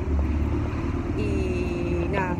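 City street traffic rumbling steadily. A steady, even-pitched tone joins in just over a second in and holds.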